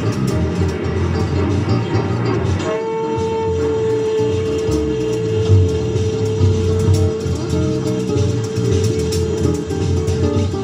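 Live Brazilian jazz quartet playing: saxophone, guitar, electric bass and drum kit. About three seconds in, the saxophone starts one long note and holds it steady over the band for about seven seconds.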